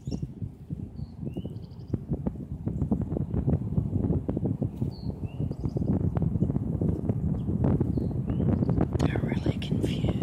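Fingers scratching and rustling through lawn grass close to the microphone: a dense, continuous run of crackles and scrapes. A few short bird chirps sound now and then above it.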